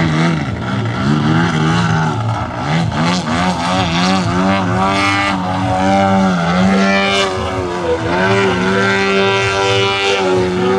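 Large-scale RC Extra 330SC aerobatic model's engine and propeller, throttle repeatedly rising and falling as it manoeuvres low, then holding a steadier note in the last couple of seconds.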